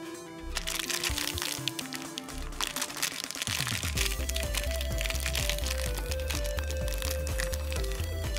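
Background music, with a steady bass beat coming in about halfway through, over the crackle and crinkle of a thin plastic candy wrapper being handled and torn open.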